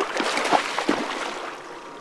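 Water splashing and churning as a muskie thrashes in a landing net at the side of the boat; the splashing is strongest at first and dies down after about a second and a half.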